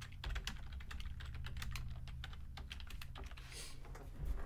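Typing on a computer keyboard: a quick, irregular run of key clicks over a low steady hum.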